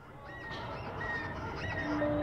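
Short, high chirping calls like birdsong, about four of them, over a hiss that grows louder. A low, held bass clarinet note comes in near the end.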